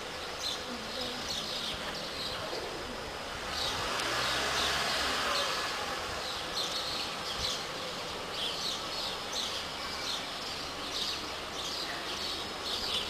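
Small birds chirping in short, repeated high calls, over the low sound of a car engine that swells about four seconds in as the car manoeuvres.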